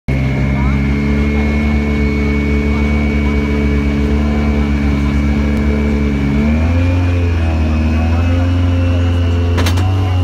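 Citroën DS3 WRC rally car's 1.6-litre turbocharged four-cylinder engine idling, steady at first, then its idle shifting and wavering a little from just past halfway. A single sharp click comes near the end.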